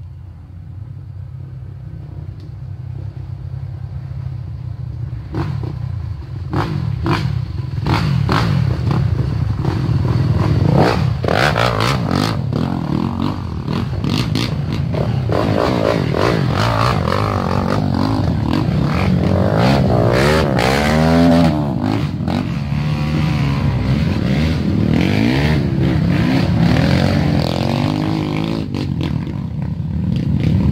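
Off-road dirt bike engines getting louder over the first several seconds as the bikes approach, then running loud at close range. Sharp knocks are mixed in, and around twenty seconds in there are hard revs that rise and fall in pitch.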